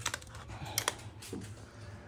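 A few light metallic clicks and ticks, the sharpest pair a little under a second in, as an Allen key works the steel motor-mount screws on a mini dirt bike frame.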